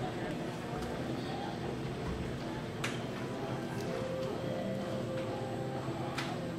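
Indoor arena background: music playing over the sound system with indistinct voices of people talking, and a sharp click about halfway through.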